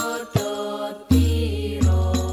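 Hadrah al-Banjari ensemble performing sholawat: voices singing a held melody in chant style over rebana (terbang) frame drums, with deep drum strokes about a second in and again near the end.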